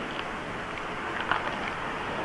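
A 383 cubic-inch Ford V8 NASCAR-style engine with Robert Yates heads idling steadily, its idle described as nice.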